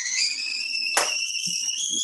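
Stovetop kettle whistling at the boil: a high whistle whose pitch rises steadily. A single click comes about halfway through.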